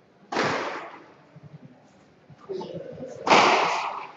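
Two sharp cracks of a squash ball struck hard and hitting the walls, about three seconds apart, each ringing briefly in the court's echo; the second is the louder.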